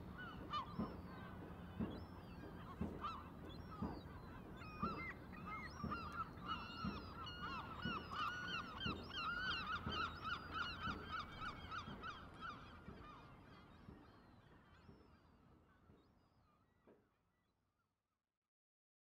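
A flock of geese calling, many short calls overlapping, thickest in the middle and fading out over the last few seconds.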